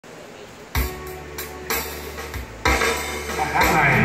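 Yamaha electronic keyboard opening a song: a few sharp hits with low notes under them, then sustained accompaniment chords from about two and a half seconds in. A man's voice comes in near the end.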